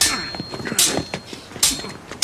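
Swords clashing in a sword fight from a TV drama's soundtrack: three sharp metal strikes a little under a second apart, each ringing briefly.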